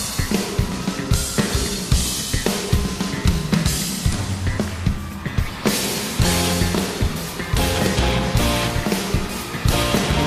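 Live rock band playing an instrumental intro: drum kit with a steady beat, electric bass and electric guitars. Two live recordings of the same song play at once, one in each stereo channel.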